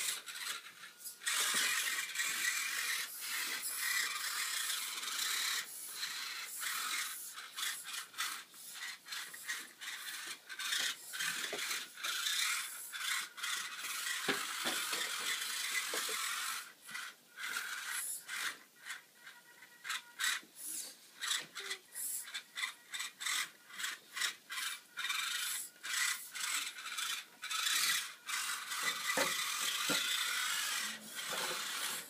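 Losi Micro Crawler's small electric motor and gearbox whirring in stop-start bursts as it crawls, with its tyres rubbing and scraping over the plastic bodies of other RC cars. The bursts turn shorter and choppier about halfway through.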